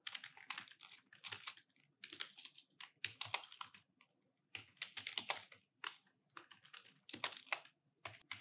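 Typing on a computer keyboard: short runs of quick keystrokes with brief pauses between.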